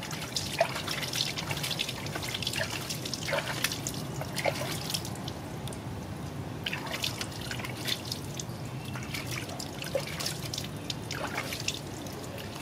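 Water dripping and splashing into a plastic basin as a wet hand rubs and rinses a baby monkey's fur: many small irregular drips and splashes.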